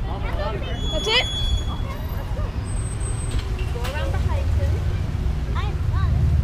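Scattered distant voices over a steady low outdoor rumble, with a brief rising whistle-like call about a second in.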